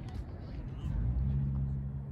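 Low, steady hum of a vehicle engine that grows louder about a second in.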